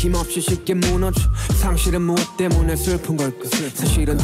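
A male voice rapping in a half-sung flow over a slow hip hop beat with deep, sustained bass.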